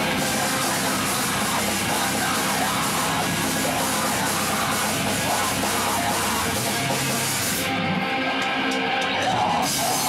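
Extreme metal band playing live: distorted guitars, drums and screamed vocals in a loud, unbroken wall of sound.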